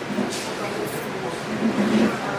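Indistinct voices of people talking over a steady background noise.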